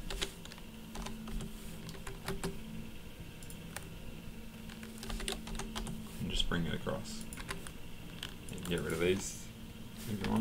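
Computer keyboard keys being pressed in scattered, irregular single clicks as drawing values and commands are typed in.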